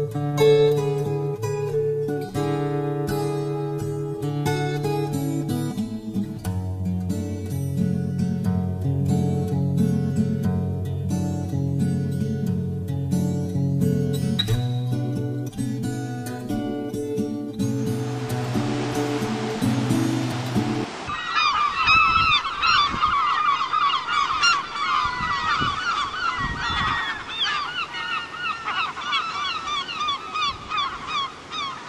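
Acoustic guitar music plays for the first two-thirds, ending abruptly about 21 seconds in, as a rush of noise rises; then a clifftop colony of gulls calls in many overlapping, quickly gliding cries.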